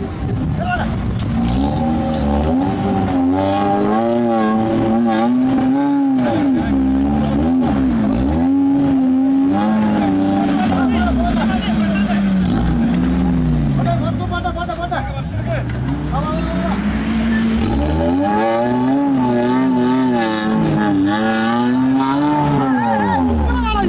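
Modified Maruti Gypsy's petrol engine revving up and down over and over as it is worked through a dirt off-road course, with a brief lull in the revs past the middle.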